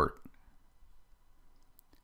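A spoken word ends, then near silence broken by a few faint clicks, two of them close together near the end.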